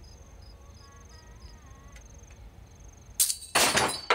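Crickets chirping steadily at night. About three seconds in, a sudden loud crash of something breaking, followed by a second crash and clattering.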